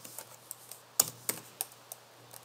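Typing on a computer keyboard: a run of irregularly spaced key clicks as a word is typed, the loudest about a second in.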